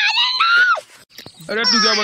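A cartoon character's high-pitched scream, rising in pitch and breaking off just under a second in. After a short pause a man's voice shouts a couple of words.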